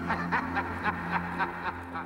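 Film soundtrack played from a VHS tape: Freddy Krueger's laugh, short repeated cackling syllables about four a second, over a steady low hum.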